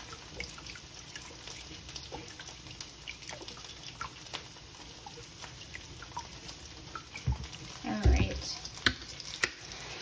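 Soy sauce pouring in a thin stream from its bottle into a glass measuring cup of water, over the soft, steady crackle of beef frying in a pan. Near the end come a few knocks and clicks.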